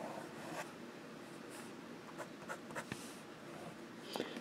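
Noodler's Tripletail fountain pen nib scratching faintly across lined paper in a run of short strokes as it draws loops.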